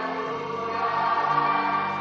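Voices singing together in a slow gospel worship song over keyboard chords, with long held notes and no drum hits.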